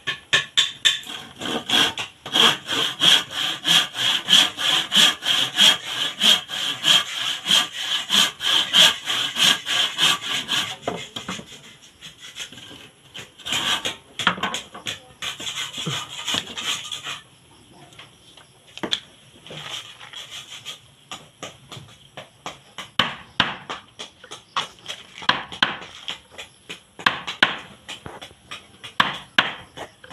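Handsaw cutting through a timber plank in quick, steady back-and-forth strokes for about the first eleven seconds, with a shorter bout of sawing a few seconds later. After that, a hammer taps a chisel into the wood in scattered sharp knocks.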